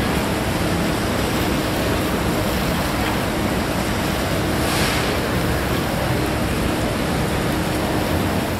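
Steady rushing noise of wind on the microphone, with an unsteady low rumble as it gusts.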